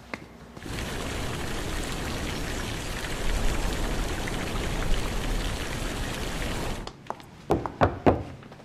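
Fountain water splashing steadily, cutting off suddenly about a second before the end. Then a few knocks on a door near the end.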